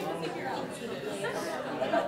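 A roomful of people chattering at once, many overlapping conversations between pairs of partners.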